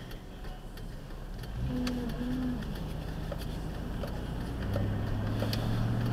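Car engine heard from inside the cabin as the car pulls away from a stop, a low hum that starts about a second and a half in and grows stronger near the end, with a few faint clicks.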